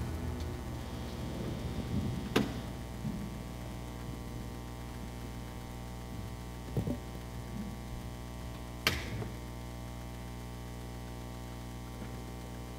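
Steady electrical mains hum on the church sound system, with a few short knocks and clicks, a sharp one about two seconds in and another near nine seconds.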